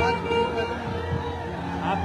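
Indistinct background voices over a steady low hum.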